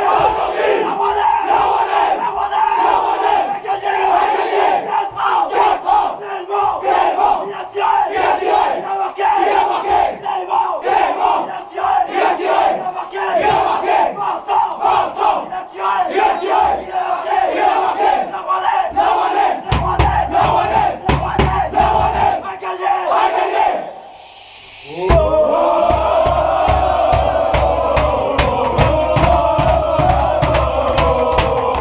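A football team chanting together in a small changing room, in unison with sharp rhythmic beats, a victory celebration. About 20 s in, heavy rhythmic thumping joins; after a short break the chant comes back louder as a rising group shout, with the thumping going on.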